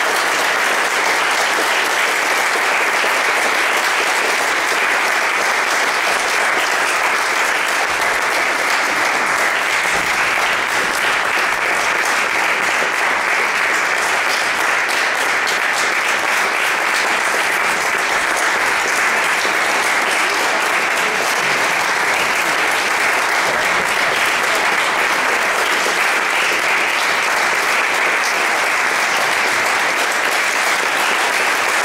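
Audience applauding steadily and without a break, the dense clapping echoing in a church.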